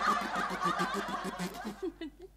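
A woman imitating a tractor engine with her mouth: a rapid putt-putt stutter ('tu-tu-tu') that fades and stops a little before two seconds in.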